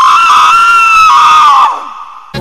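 A loud, long, high-pitched scream that holds its pitch, then bends down and fades out about a second and a half in.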